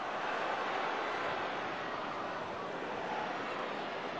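Football stadium crowd noise: a steady, even hum from the stands with no distinct cheer or chant.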